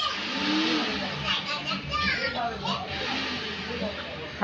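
Indistinct chatter of several voices, children's voices among them, with no one voice standing out.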